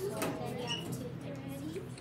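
Classroom chatter: several children talking quietly at once while working in pairs, with one short high squeak about two-thirds of a second in.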